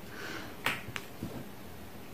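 Two short, soft clicks from a person's mouth, a little over half a second in and about a third of a second apart, with a faint breath before them. It is a small stifled sound that she excuses herself for.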